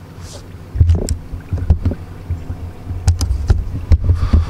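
Camera handling noise: irregular low rumbling thumps and a few sharp knocks on the microphone as the camera is moved, starting about a second in.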